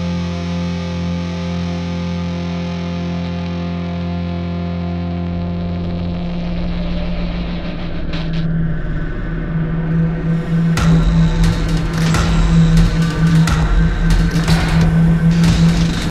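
Closing seconds of a heavy rock song: a distorted electric guitar chord held ringing, then about eleven seconds in the music comes back louder with deep bass and sharp hits.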